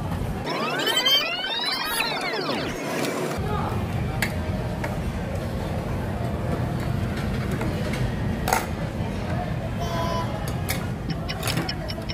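Restaurant background with occasional clinks of tableware. About half a second in, a pitched sound sweeps up and back down over roughly three seconds, like an edited-in sound effect.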